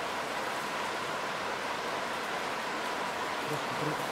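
Steady, even rushing noise with no distinct events, over a faint steady high tone.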